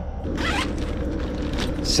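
Zipper on a soft cooler bag being pulled open, with a steady low hum underneath.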